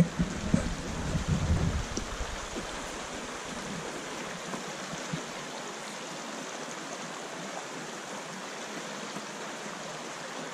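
A shallow rocky creek running: a steady rush of flowing water. Low rumbling thumps come through in the first two seconds, then the water sound carries on alone.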